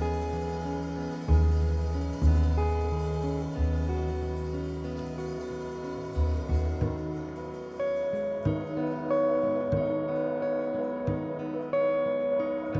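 Live jazz: electric guitar playing slow, ringing chords and single notes, over deep bass notes that sound through the first half.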